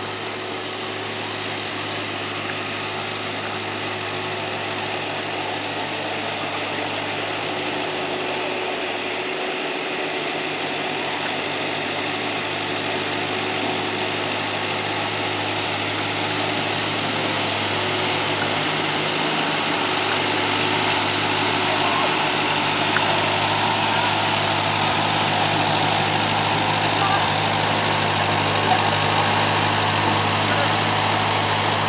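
A 1940s Ford tractor's four-cylinder engine running at a steady low speed. It grows slowly louder as the tractor draws near and pulls up close.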